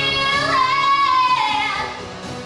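A high singing voice holding one long note, which slides down near the end, over rock music accompaniment.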